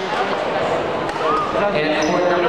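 Several people talking and calling out at once, their voices echoing in a large gym hall.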